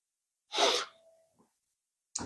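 One short, sharp, breathy burst from a man's voice, about half a second in.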